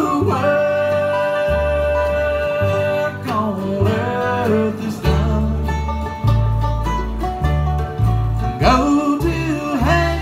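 Live bluegrass band playing a slow song: banjo and acoustic guitars over upright bass, with long held notes, and singing in bending phrases about three seconds in and again near the end.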